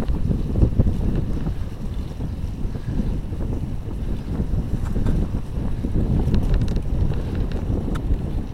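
Wind buffeting a tablet's microphone while moving along a street, a steady low rumble that flutters in level.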